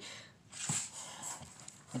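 A person's breath, a faint breathy hiss lasting about a second, with a brief click near its start.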